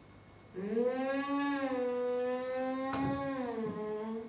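A single voice holding one long wordless note for about three and a half seconds, gliding up at the start and dropping away at the end. A short knock sounds about three seconds in.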